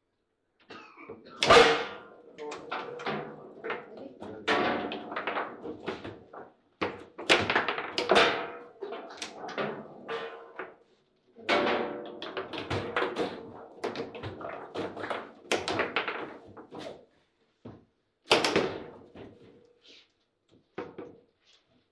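Table football play: the hard ball cracking against the plastic figures and table walls, rods clacking and sliding, in quick irregular bursts with several loud shots. Two goals are scored, the ball slamming into the goal.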